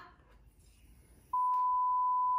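A censor bleep: one steady, high, pure beep tone that starts abruptly about two-thirds of the way in, after a brief hush, standing in for the unspoken word at the end of 'send them to...'.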